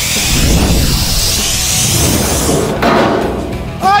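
Handheld plasma cutter hissing as it cuts through an aluminium boat hull, starting suddenly and running about three seconds, then a coarser crash as the cut-out piece of hull comes away. Background music plays under it.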